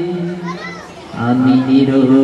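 Man singing a Bengali Islamic song into a microphone: a held note fades out, there is a short dip in which children's voices are heard, and about a second in he starts a new long held note.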